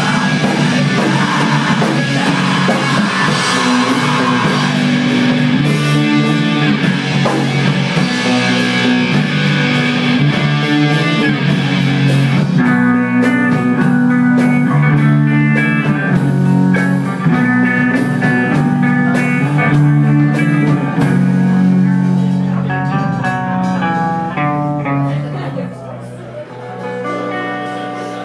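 Live rock band playing an instrumental passage on electric guitars, bass guitar and drums. About halfway through the cymbals drop out and the guitars and bass carry on alone, fading down near the end.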